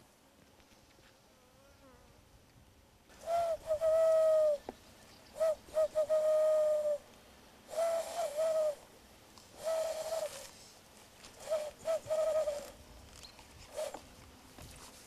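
A person blowing into cupped hands, making a hand whistle: about six breathy, hooting notes, each held from half a second to a second, all at much the same pitch with slight wavers, starting about three seconds in.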